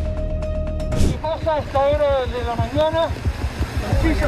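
Background music with a steady beat for about a second, then a person's raised voice exclaiming in rising and falling cries over low wind and road rumble on the microphone.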